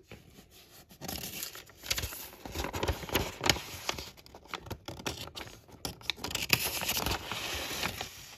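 A sheet of grid paper being lifted and bent, crinkling and rustling, with loose green scatter material sliding and pattering across it as the excess is funnelled off. It starts about a second in and goes on in a dense run of small crackles.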